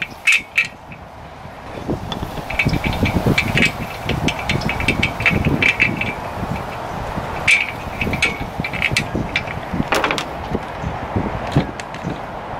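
Steel U-bolt and bike-rack hardware clinking and rattling against the metal rack bar as the U-bolt is fitted, a string of light metallic clicks and taps with a sharper click about ten seconds in.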